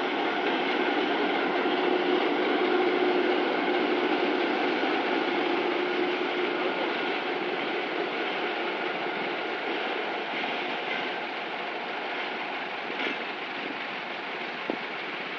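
GR-12 diesel-electric locomotive and its three Materfer coaches rolling past on the rails: a steady engine hum with running-gear and wheel noise, loudest in the first few seconds as the locomotive goes by, then slowly fading as the coaches pass and the train moves away.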